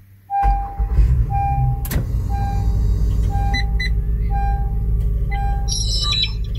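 2017 Honda Pilot's V6 engine starting from the push button and settling into a steady idle, heard from inside the cabin. A dashboard chime beeps about once a second over it, six times.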